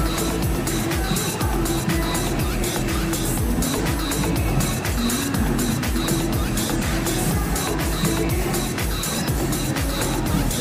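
Background music: a song with a steady, even beat and a prominent bass line.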